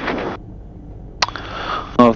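Low steady engine hum heard through the headset intercom, with a short breathy hiss at the start and a single sharp click about a second in.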